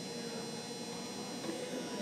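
Steady hum and buzz of a large indoor arena's ambience, with no distinct impacts.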